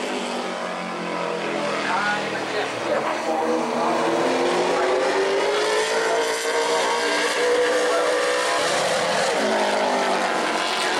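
Super late model stock car's V8 engine running at racing speed around the oval, heard from trackside with the car out of view. Its pitch dips slightly, then rises and holds steady.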